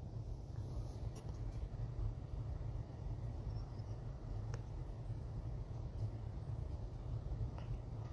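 A few faint clicks from wire connectors being handled and pushed onto a thermostat's terminals, over a low steady rumble.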